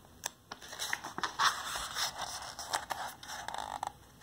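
Paper page of a picture book being turned by hand: a couple of light clicks, then paper rustling and sliding for about three seconds.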